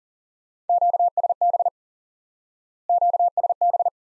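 Morse code sent as a single-pitch beep at 40 words per minute: the Q-code QSB, meaning signal fading, keyed twice, as two identical quick bursts of dits and dahs about two seconds apart.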